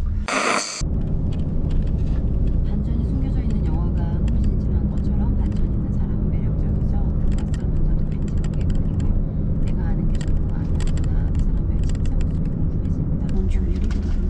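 Steady low rumble of a moving van's cabin. About halfway through, paper starts rustling and crackling as script pages are handled. A short bright burst sounds near the start.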